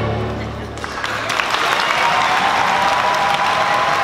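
A student string orchestra's last chord dies away, and about a second in an audience breaks into loud, sustained applause.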